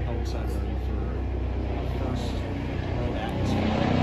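A faint, off-microphone voice over a steady low outdoor rumble that eases off about two and a half seconds in.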